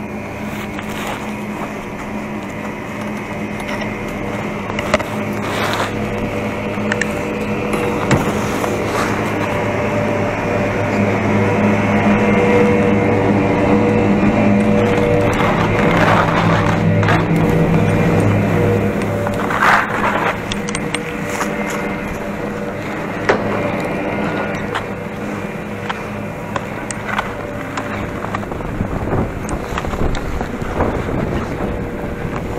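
Chairlift top-station drive machinery running with a steady humming drone of several tones, with scattered clicks and knocks. Around twenty seconds in the drone fades and skis scrape over icy, hard-packed snow.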